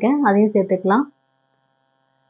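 Speech only: a voice talking for about a second over a steady electrical hum that stops with the voice, then dead silence.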